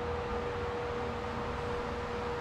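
Brown & Sharpe milling machine running at steady speed: an even mechanical hum with one steady mid-pitched whine, as its spindle bearings are run in.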